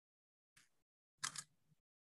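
Near silence, broken by one short sound a little past the middle.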